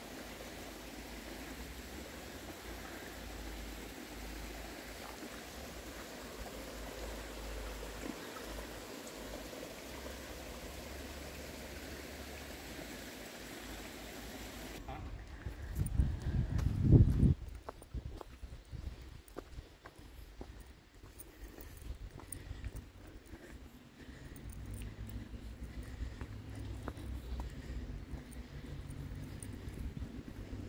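A small mountain creek running over rocks, a steady rushing that cuts off suddenly about halfway through. A brief loud low rumble follows, then quieter outdoor sound with scattered light ticks.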